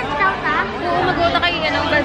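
People talking close by, with overlapping chatter from a crowd behind.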